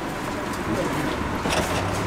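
Steady low background rumble, with a single knock of a knife on a wooden chopping board about one and a half seconds in.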